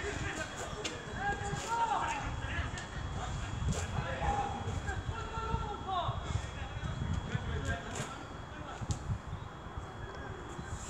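Faint voices in the distance over outdoor background noise, with a few light taps and shuffles nearby.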